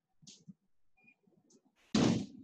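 A pause in a woman's speech: a quiet room with faint breath and mouth sounds, and a louder noisy breath-like sound right at the end.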